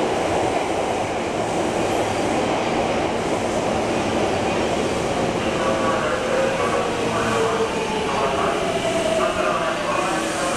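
Hankyu 8300 series electric train running along an underground station platform: a steady rumble of wheels and running gear, echoing in the enclosed station. Through the second half a motor whine slowly falls in pitch.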